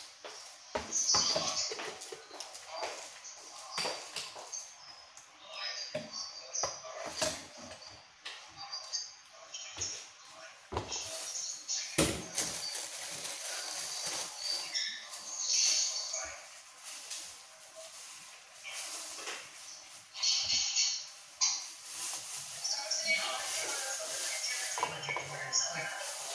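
Rustling with scattered light clicks and knocks, the sounds of something being handled.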